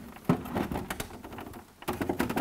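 Scattered knocks and clicks of a ductless mini split indoor unit's plastic housing being handled on its wall mounting bracket, tilted out from the wall on a screwdriver used as a prop. The loudest knocks come about half a second in and just before the end.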